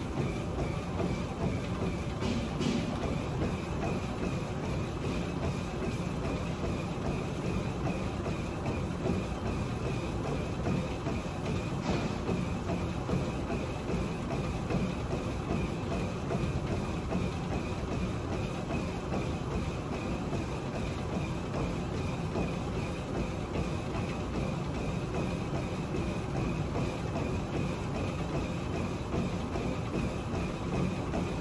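Treadmill running with a person jogging on it: a steady run of footfalls on the moving belt over the machine's motor and belt noise.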